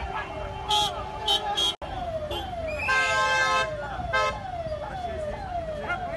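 A vehicle siren cycling in quick falling sweeps, about two a second, while car horns honk: three short toots in the first two seconds, a longer blast around three seconds in, and another short toot about a second later. Voices shout underneath.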